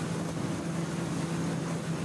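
Aircraft in flight: a steady droning hum over an even rush of engine and air noise.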